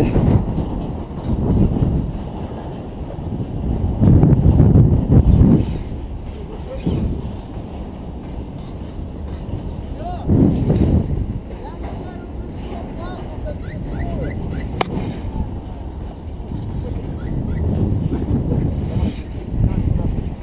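Wind rushing over the camera microphone during a rope-jump fall and swing, surging loudest about four to five seconds in and again around ten seconds, with a single sharp click near the fifteen-second mark.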